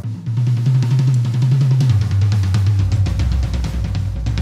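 Drum kit played with German grip: a fast, continuous run of strokes around the drums that steps down in pitch toward the lower toms about halfway through.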